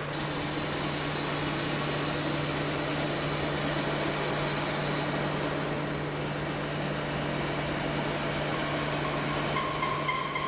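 Shaking-table test rig running a sweep excitation: a steady low machine hum with a thin high whine over it, strongest in the first half.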